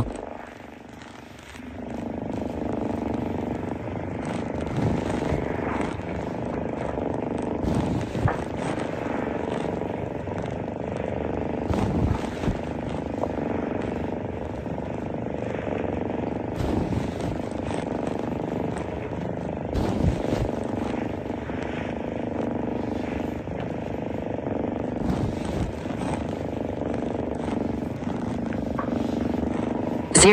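A steady low rumbling noise with occasional short knocks.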